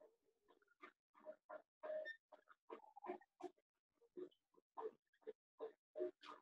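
Whiteboard marker squeaking faintly against the board in a quick run of short strokes, about three a second, as a math expression is written.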